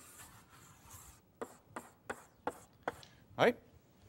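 Chalk on a blackboard: a faint scrape as a long line is drawn, then a quick series of short, sharp chalk strokes as the cell dividers are ticked in.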